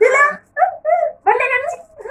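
Women's voices: a murmured "mm-hmm", then a few short high-pitched cries and laughter.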